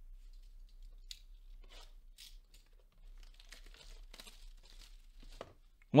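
Quiet rustling and tearing of a trading-card blaster box's packaging as it is handled and unwrapped, with a light click about a second in.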